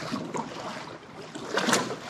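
Choppy waves splashing and slapping against a Jackson Knarr fishing kayak's hull as it runs through rough water, with an irregular run of splashes and one louder splash near the end.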